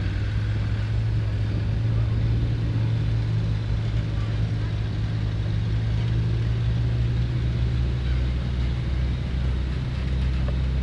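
Engines of military vehicles in a slow-moving convoy, a Land Rover and a wheeled armoured scout car among them, driving past with a steady low drone.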